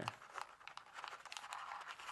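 Sheet of kami origami paper crinkling under the fingers as a curved fold is pressed into it: a faint, irregular string of small crackles.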